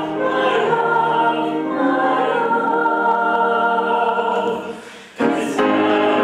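Youth choir of girls' voices singing held chords. Near the end the phrase fades away, and the choir comes back in strongly just before the end.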